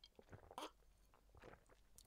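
Near silence with a few faint, soft clicks and swallowing sounds of someone drinking from a glass.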